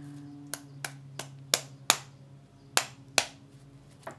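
A tarot deck being shuffled by hand, the cards giving about eight sharp clicks at uneven spacing over a steady low hum.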